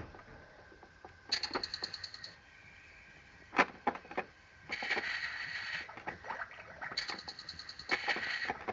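Electronic sound effects from a toy play-kitchen stove, set off by pressing its buttons: a quick run of rapid clicks about a second in, a hiss in the second half, and another run of rapid clicks near the end.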